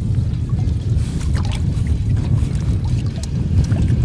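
Water pouring and splashing into a boat's livewell over a steady, loud low rumble.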